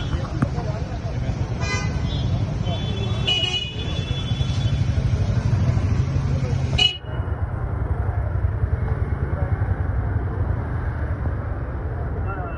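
Street noise with indistinct voices and a steady traffic rumble, and a car horn sounding for about a second roughly three seconds in.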